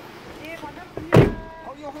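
Korean speech in the background, with one loud thump a little over a second in.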